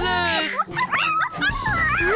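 Cartoon soundtrack: background music with a dog's yelps and whimpers, a falling cry right at the start followed by short sharp yips.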